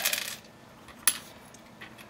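Small plastic LEGO pieces clicking and tapping against each other and the tabletop as they are picked up and sorted by hand: one sharp click about a second in, with a few fainter ones around it.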